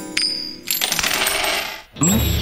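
Cartoon sound effect of coins dropping onto a wooden floor: a sharp clink with a ringing metallic tone just after the start, then about a second of rushing, rattling noise that cuts off near the end.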